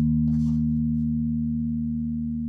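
Five-string electric bass playing through a Darkglass Alpha Omega bass preamp pedal, a final held low note ringing out and slowly fading, with a faint scrape of string noise about half a second in.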